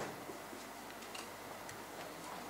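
A sharp click at the very start, then low room noise in a meeting room with a few faint, light ticks spaced about half a second apart.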